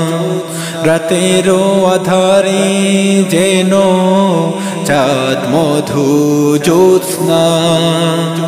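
Bangla nasheed: a wordless sung vocal melody gliding over a steady low drone, in a pause between sung lyric lines.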